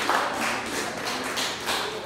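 Audience applause thinning out into scattered hand claps, about three a second, fading away.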